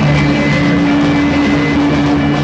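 Live rock band: loud distorted electric guitar sustaining a droning chord through an amplifier, held steady.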